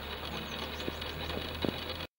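Outdoor ambience: a steady low hum with a few faint, high descending chirps, likely birds, in the first second and a few light knocks scattered through.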